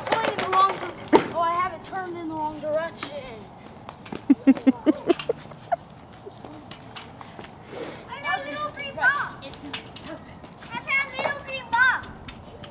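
Children's voices laughing and calling out without clear words, in rising and falling bursts, with a short clatter of sharp knocks about four seconds in.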